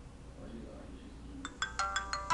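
Mobile phone's power-on startup tune: a quick run of bright chiming notes beginning about one and a half seconds in, as the phone finishes booting.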